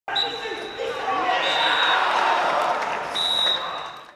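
Football referee's whistle blown in three blasts, each a little longer than the one before, the signal for the end of the match, over players' shouts and crowd noise.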